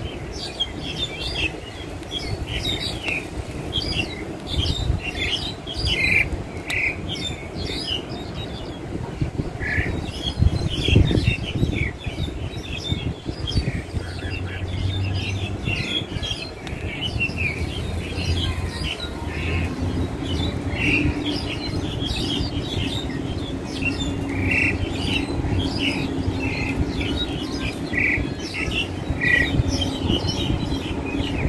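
Wild starling (jalak Hongkong) singing and calling: a run of short chirps and squawks, repeated over and over. A low steady hum joins in from about halfway.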